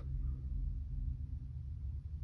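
Quiet room tone: a low steady hum, with a faint steady tone that fades out about three-quarters of the way through.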